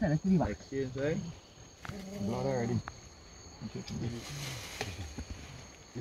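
Men talking and one laughing, over a steady high, thin trill of night insects such as crickets. A brief hissing rustle comes about four seconds in.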